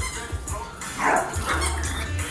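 A small dog barks twice in quick succession about a second in, over background music with a heavy bass beat.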